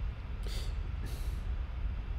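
Steady low background hum, with two brief soft hisses about half a second and about a second in.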